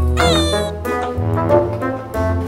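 Background music with a single cat meow about a quarter of a second in, lasting about half a second.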